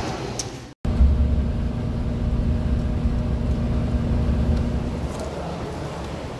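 Bus engine running with a low, steady rumble and a faint steady hum. It cuts in suddenly about a second in and drops back near the end.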